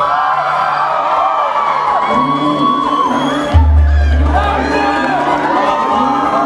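Bollywood dance music played loud over a hall's PA, with an audience cheering and whooping over it; a heavy bass beat comes in about three and a half seconds in.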